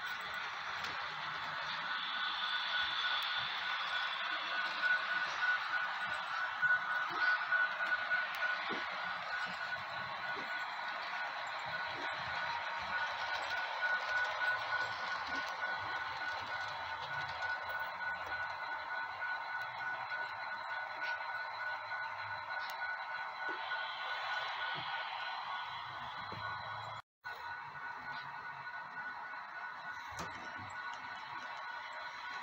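HO-scale model train running on curved track: a steady whirr of the locomotive motor and metal wheels rolling on the rails, with a constant high whine. The sound cuts out for an instant near the end.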